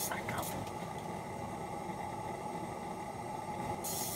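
Steady hiss and roar of a pressurized Coleman lantern burning in a small shelter, with a brief burst of higher hiss near the end.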